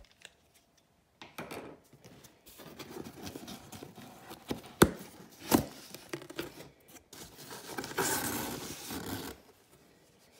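A cardboard shipping box being opened by hand: packing tape cut and torn, and the cardboard flaps scraping as they are pulled open, with two sharp snaps about halfway through. Near the end comes a longer stretch of rustling as the packing slip is lifted off the packing peanuts.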